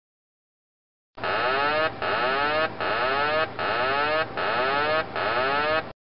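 Boeing 737NG cockpit aural warning tone sounding six times in quick succession, starting a little over a second in; each sounding lasts about three quarters of a second with a wavering pitch and a short break between.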